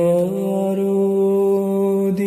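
A man singing a Bengali Islamic song, holding one long, steady note after a short rise in pitch at the start.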